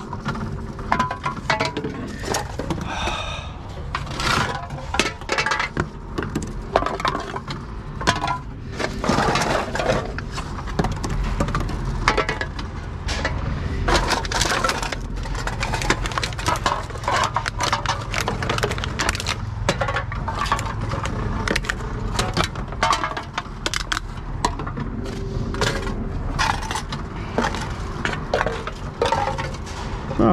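Aluminium drink cans and plastic bottles clattering as they are fed one after another into a TOMRA reverse vending machine, with many irregular knocks and clinks of containers striking the intake and dropping inside, over a faint steady hum.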